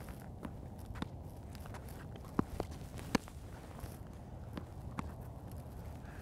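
Spec tennis rally: paddles striking the ball and the ball bouncing on the hard court, heard as a few scattered sharp knocks, the clearest about one, two and a half and three seconds in, with shoes moving on the court between them.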